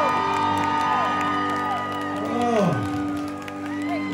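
Live band playing softly: steady held chords with electric guitar notes that bend up and fall back down several times.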